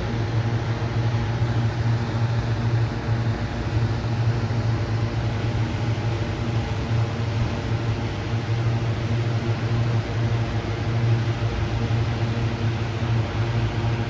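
Steady low mechanical hum of a motor running at a constant pitch, with a strong low drone and a ladder of fixed overtones above it.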